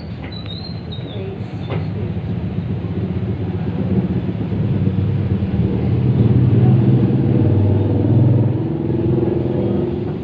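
Low engine rumble with a steady pitch that grows louder over several seconds, peaks, then eases off near the end, like a motor vehicle passing close by.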